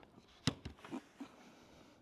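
A motorcycle helmet handled on a wooden table: one sharp click about half a second in, then a few faint ticks.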